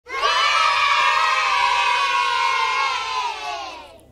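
A group of children cheering together in one long shout that starts suddenly and falls in pitch as it dies away near the end.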